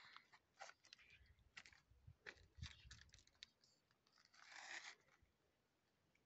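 Near silence with faint, scattered crunches and clicks of loose stones and gravel underfoot or in hand. There is a brief soft rustle about four and a half seconds in.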